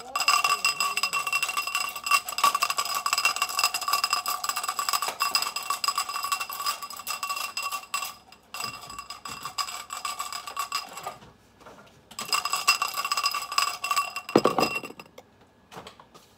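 Marker pens rattled and shaken inside a drinking glass: a rapid, continuous clinking with the glass ringing over it. It comes in two spells with a short break about two-thirds of the way through, and there is a dull bump near the end.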